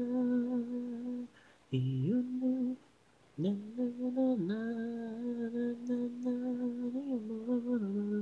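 Unaccompanied female voice singing long held notes with no instruments, an isolated vocal track. It breaks off twice in the first three seconds and swoops down briefly about four and a half seconds in.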